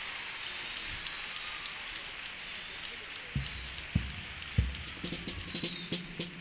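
Audience applause in a theatre, fading as a bass drum starts a steady beat about three seconds in, near one and a half beats a second, joined by sharper percussion strikes near the end as the next piece begins.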